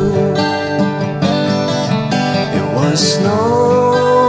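Two steel-string acoustic guitars playing a country-folk tune together.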